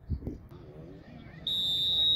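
Referee's whistle: one long, steady blast starting about one and a half seconds in, the signal for a free kick to be taken. Players' voices can be heard before it.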